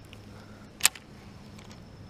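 One sharp click a little under a second in, over a faint steady background hum.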